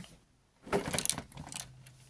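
Plastic LEGO bricks of the LEGO 10294 Titanic model clicking and rattling as the middle hull section is pulled away from the aft section, a cluster of clicks about a second in.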